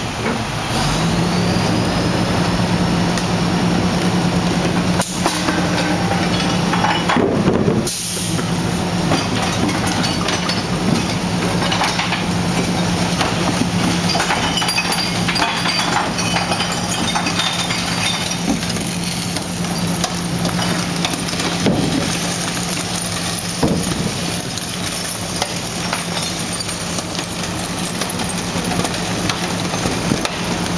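Rear-loader garbage truck's engine speeding up about a second in and holding a steady raised idle, with a high hydraulic whine, as the packer blade cycles through the hopper. A short hiss comes about eight seconds in, and trash and cardboard clatter into the hopper.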